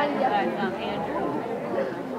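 Audience chatter: many voices talking over one another in a hall before a performance.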